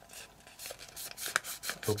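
Sheet of origami paper rustling and crinkling in the hands as a folded pocket is pried open: a string of short, crisp, faint rustles.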